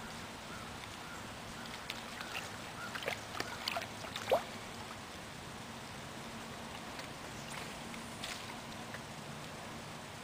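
Pond water sloshing and gurgling against a small boat: a cluster of small, quick gurgles about two to four seconds in, over a faint steady hiss.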